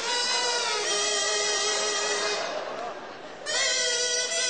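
A kazoo buzzing out a tune in long held notes. It drops away for about a second past the middle and comes back in near the end.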